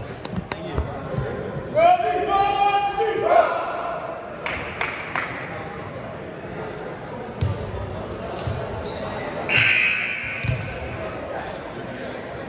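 Volleyballs being hit and bouncing on a hardwood gym floor: sharp single thuds every second or so, ringing in a large gym. A player's long shout about two seconds in.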